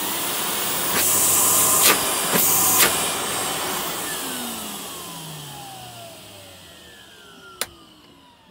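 Numatic autosave Henry vacuum cleaner motor, its PCB board removed so it runs straight at full speed, starting with a rising whine and running loud for about three seconds, with a few sharp knocks. It is then switched off and winds down, its whine falling in pitch and fading over about four seconds, with a click near the end.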